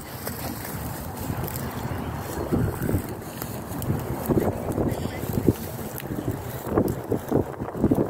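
Wind buffeting the microphone outdoors: a low rumble that rises and falls in uneven gusts.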